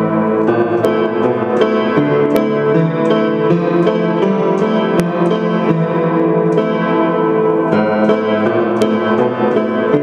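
Russian upright piano played continuously in dense, ringing chords, with new notes struck in quick succession at a steady loud level.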